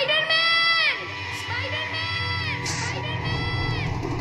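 A high-pitched yell held for about a second, heard again twice, fainter each time, like an echo.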